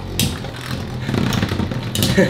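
Beyblade spinning tops whirring and clattering against each other in a plastic battle stadium, with a sharp click just after the start.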